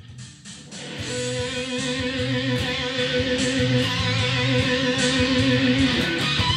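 Epiphone electric guitar played through a ProCo RAT distortion pedal, fading in over the first second and then holding sustained, ringing distorted notes and chords.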